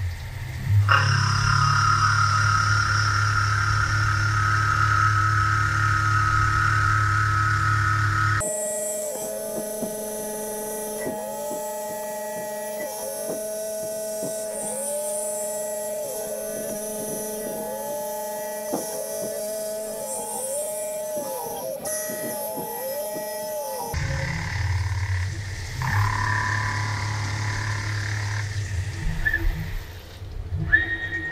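Tormach PCNC 440 CNC mill running its spindle and cutting with a 3/4-inch end mill under flood coolant, a steady machining whine. For a long stretch in the middle the sound turns higher and thinner, with a tone that dips and rises about once a second as the sped-up adaptive clearing passes repeat.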